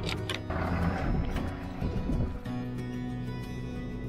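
Background music with held notes, with two short clicks right at the start.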